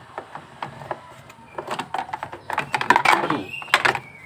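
Plastic clicks and rattles of an engine-bay fuse box lid being unclipped and lifted off, with a cluster of the loudest snaps about three seconds in.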